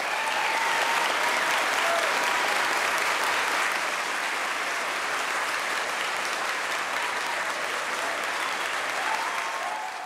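A large audience applauding, a standing ovation. The clapping builds in the first second, holds steady, then dies away near the end.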